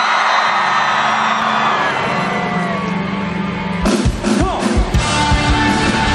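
Large festival crowd cheering and yelling as a live rock song begins over the PA: a held note sounds under the shouts, then drums and guitars come in about four seconds in.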